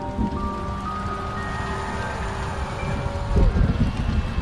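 Intro music: a sequence of held notes stepping upward in pitch over a dense, crackling rumble, with a deep boom about three and a half seconds in.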